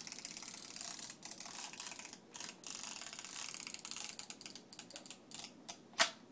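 Plastic clicking and ratcheting of a Ben 10 Omnitrix toy watch being handled and turned in a child's hands: a rapid run of small clicks, with a few sharper single clicks near the end.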